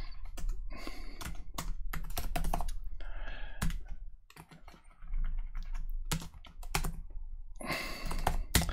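Typing on a computer keyboard: quick runs of keystrokes with a short pause a little past halfway.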